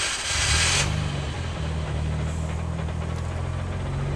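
Nissan Skyline GT-R R34's RB26DETT twin-turbo straight-six being remote-started from a Viper security fob. The start noise ends under a second in as the engine catches, and it settles into a steady idle.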